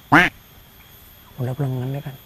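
A short, loud, squawk-like cry just after the start, then a man's voice holding one drawn-out vowel from about a second and a half in.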